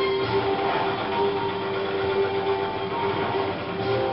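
Battle sounds from an early sound film's soundtrack, played through room loudspeakers: a continuous dense rattle with a steady hum underneath.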